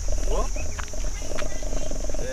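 Steady high-pitched drone of insects such as crickets, over a low rumble, with brief fragments of voices.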